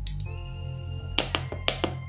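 Ambient background music with sustained tones. Over it come a few sharp light clicks: one right at the start, then two quick pairs a little over a second in.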